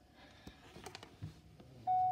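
Faint rustling with a few soft clicks, then a short steady electronic beep just before the end.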